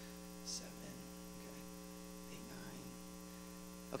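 Steady electrical mains hum on the sound-system feed, with a brief faint hiss about half a second in.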